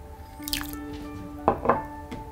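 A few soft splashes and drips as brine seasoning is dropped into a glass bowl of cold water, over background music with steady held tones.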